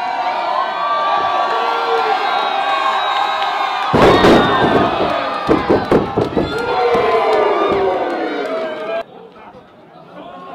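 Wrestling crowd cheering and shouting, with a loud slam of a body hitting the ring mat about four seconds in, after which the cheering rises and a few more sharp thuds follow. The noise drops suddenly about a second before the end.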